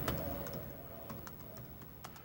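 Typing on a computer keyboard: a faint, uneven run of key clicks as code is entered.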